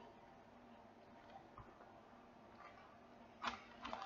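Near silence: room tone, with a few faint ticks and one short click near the end.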